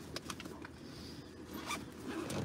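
A few faint clicks and a rustling scrape, like something being handled inside a parked car.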